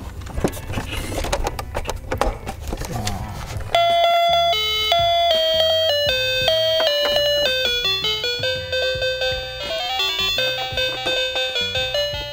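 Plastic clicks and rustling as a toy school bus is handled, then about four seconds in the bus's built-in electronic sound chip starts a simple tune of clear, stepped beeping notes that plays on to the end.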